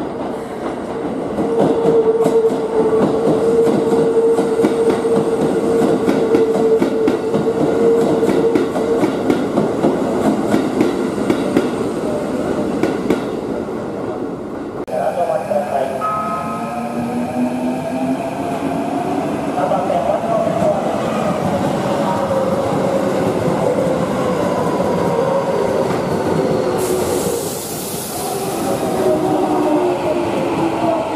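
Keikyu New 1000 series electric trains moving through the station throat. First a four-car set rolls slowly with a steady motor hum and rapid wheel clicks over the rail joints and points. Then, about halfway in, an eight-car set with a Mitsubishi IGBT inverter drive comes in, its inverter and motor tones falling in pitch as it slows, with a short hiss near the end.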